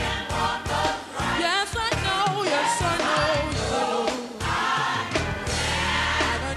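Gospel choir singing live, voices in full harmony, with a single voice wavering up and down through a run about a second and a half in.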